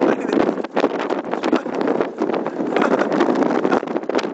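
Wind buffeting the microphone on a ship's open deck: a loud, gusty rushing that comes and goes in rapid irregular pulses.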